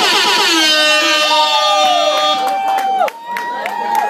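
Club audience cheering, whooping and screaming as the backing track cuts off, many voices overlapping with rising and falling yells and some held high notes.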